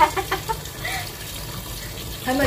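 Kitchen tap running steadily into a sink, a stream of water splashing.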